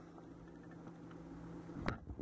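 Quiet room tone with a faint steady hum that cuts off near the end, followed by knocks and rustling from the camera being picked up and turned around by hand.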